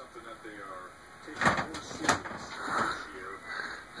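College football TV broadcast playing in a small room, with a commentator's voice heard faintly through the TV speaker. Two short sharp clicks come about a second and a half and two seconds in.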